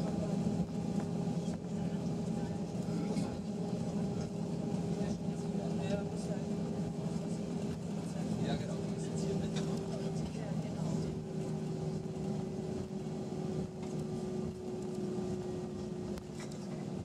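Cabin noise of an Airbus A320-232 taxiing on idle power: a steady hum from its IAE V2500 engines, with several steady tones, one of which drops slightly in pitch about ten seconds in.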